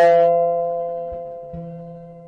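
The final strummed guitar chord of a song ringing out and slowly fading away. The player himself says this closing chord didn't come out right.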